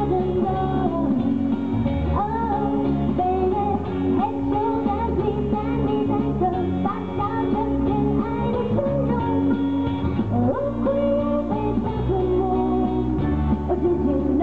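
A woman singing a pop song live into a handheld microphone over instrumental accompaniment, the sung melody running on without a break.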